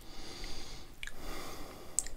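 A man breathing out through his nose twice, with faint mouth clicks between the breaths.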